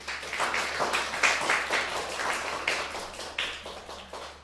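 Audience applause that starts abruptly and fades away near the end.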